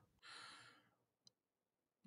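Near silence, with a faint short intake of breath near the start of a pause in speech, and one faint click a little past halfway.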